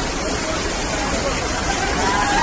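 Fast-flowing floodwater rushing and churning through a street, a steady loud rush, with people's voices calling in the background.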